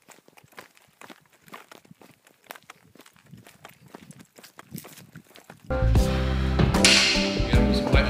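Faint, irregular footsteps and rustling of a person walking through long grass and undergrowth. Nearly six seconds in, loud music with a heavy beat cuts in.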